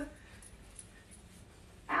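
Near silence: faint room tone, broken near the end by a woman's voice.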